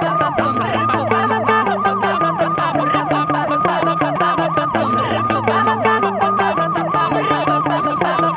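Siren in a fast yelp, a quick rise-and-fall wail repeating about three times a second, over background music with a steady beat.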